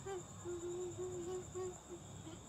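A man hooting a string of about five short, low notes through his cupped hands. The notes stay at nearly one pitch and some run together like a simple tune.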